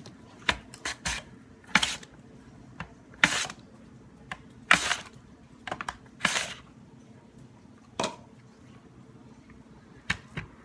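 Potato being pushed down through the small fry-cutting blade of a plastic mandolin slicer, stroke after stroke: a series of sharp plastic clacks and short scraping cuts, about a dozen in ten seconds, with the longer cuts coming roughly a second and a half apart in the middle.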